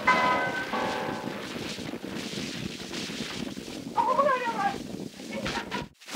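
Playback of a damaged 1942 Wilcox-Gay Recordio acetate disc: the last notes of a tune tail off in the first second into steady hiss and crackle of surface noise. A brief wavering, gliding pitched sound comes about four seconds in, and the sound cuts off suddenly just before the end.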